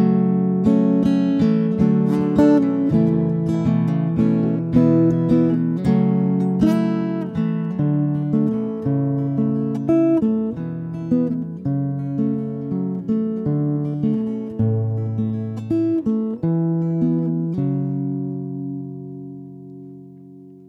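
Acoustic guitar playing an instrumental passage of picked notes and chords. It ends on a chord that rings out and fades away.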